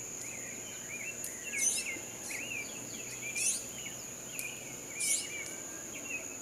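Insects and birds: a steady, high-pitched insect drone with short chirping bird notes over it, and three louder bird calls at even intervals.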